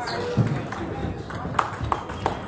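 Sharp clicks of celluloid-type table tennis balls striking bats and tables, a few in the second half, with voices talking in the hall.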